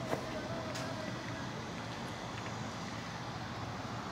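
Steady low background rumble with a few faint ticks, and no clear foreground sound.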